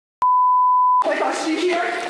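An edited-in electronic beep: one steady pure tone lasting under a second, starting a moment in and cutting off abruptly as voices come in.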